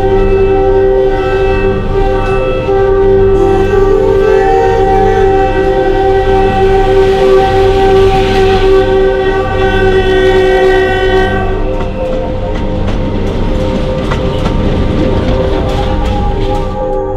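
Diesel locomotive horn blowing a long, held chord as the train approaches, over the low rumble of the engine. About eleven seconds in, the horn drops out and the noisy rumble of wagons rolling past close by on the rails takes over.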